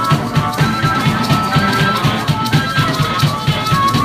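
Live rock band playing an instrumental passage without vocals: a pair of maracas shaken over drums, electric bass and guitar, with a steady driving beat and some held high notes above it.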